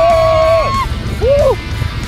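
A rider's long, held yell of excitement while speeding down an alpine coaster, cutting off just under a second in, then a short whoop, over a steady low rumble of wind on the microphone.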